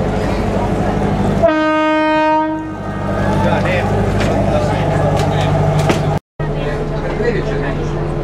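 Passenger ferry's diesel engine running with a steady low hum. About one and a half seconds in, the ship's horn gives one steady blast of a little over a second, the signal as the boat leaves the pier.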